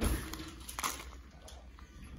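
Small plastic toy packages being handled and set down on a paper-towel-covered countertop: a sharp knock at the start, then a few fainter clicks and rustles.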